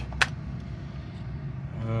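A single sharp click a fraction of a second in, as an alligator clip is worked onto a connector's centre pin, over a steady low background rumble.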